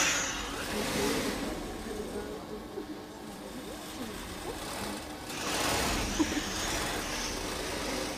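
Sewing machines running in a sewing room, with two rushes of hiss: one at the start and a longer one about five seconds in.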